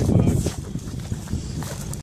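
Footsteps on gravelly dirt, with irregular knocks and rubbing from a handheld phone, loudest in the first half-second.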